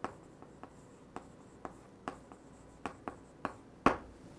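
Chalk writing on a chalkboard: a run of short, irregular taps and scratches as the strokes of a word go down, the loudest tap near the end.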